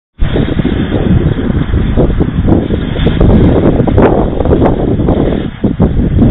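Strong wind buffeting the microphone: a loud, irregular rumble that never lets up.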